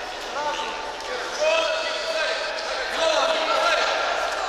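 Several high-pitched voices shouting and calling out over one another in a large echoing sports hall.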